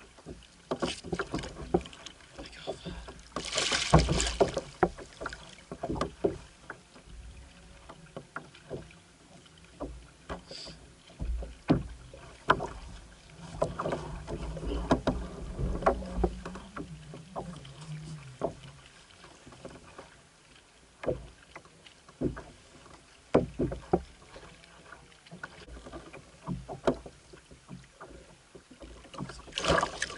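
Irregular knocks, clicks and rustling of fishing gear being handled aboard a kayak, with a louder burst of noise about four seconds in.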